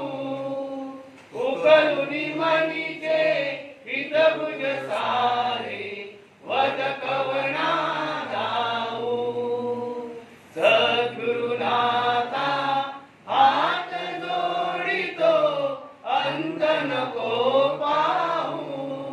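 Devotional prayer chanting, sung in phrases of two to four seconds with brief pauses for breath between them.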